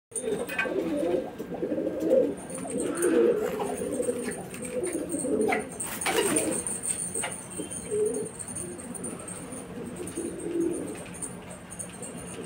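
A flock of domestic pigeons cooing, many low overlapping coos with no break, and a few sharp clicks around the middle.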